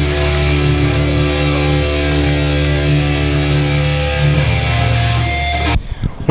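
Metal band playing live: distorted electric guitar and bass guitar holding long sustained chords over a heavy low end. The chords shift a little past the middle and cut off abruptly near the end.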